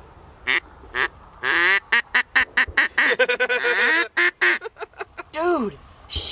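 Duck call blown by mouth in a run of quacks: two short notes, then a long string of rapid, wavering quacks, ending in one falling note. It sounds funny, not the kind of calling that brings birds in.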